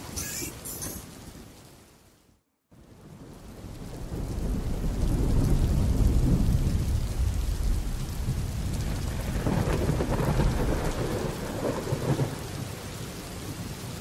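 A song fades out and the sound cuts briefly to silence, then a heavy rain sound effect with thunder swells in over a couple of seconds. The low thunder rumble runs on under the rain, with a second swell near the end.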